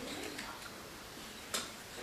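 Dry-erase marker writing on a whiteboard: faint short squeaky strokes, then a sharp tap about one and a half seconds in.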